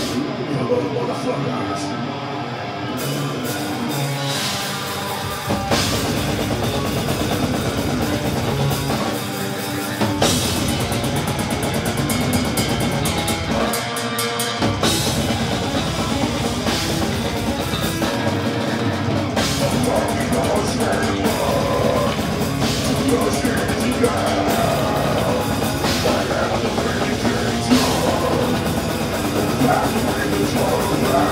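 Death metal band playing live: distorted guitar, bass and drum kit at full volume. The deep bass and kick drop out for the first few seconds and briefly a few more times, then come back in.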